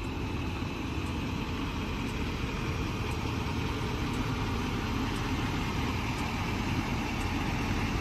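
A steady low rumble, like an engine idling, with no pauses or changes.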